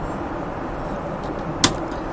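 Steady rushing cabin noise of a Boeing 777-300ER in flight, with one sharp click from the suite's mini-bar latch about a second and a half in.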